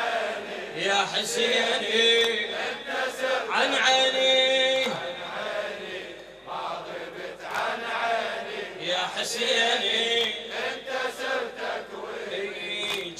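A large crowd of men chanting the refrain of a Shia latmiya together, with rhythmic chest-beating slaps in time with the chant.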